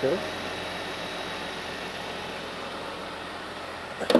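Steady idle of a 2016 Jeep Wrangler's 3.6-litre Pentastar V6, heard from under the open hood; it runs smoothly.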